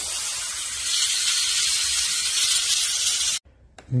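Airbrush spraying paint from a siphon-feed bottle: a steady hiss of compressed air that cuts off suddenly about three and a half seconds in.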